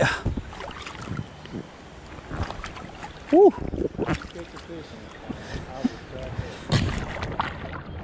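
Creek water sloshing and splashing around an inflatable tube and the rider's legs as it drifts, with scattered small splashes. A man lets out a single loud "woo" about three seconds in.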